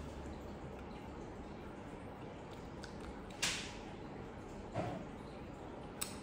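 A drink sipped through a straw: one short hissing slurp a little past halfway, over quiet room tone, followed about a second later by a soft low sound.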